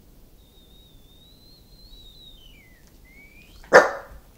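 Small terrier-type dog whining in a thin, high, wavering tone that slides down and then back up. Near the end it gives one loud, sharp bark.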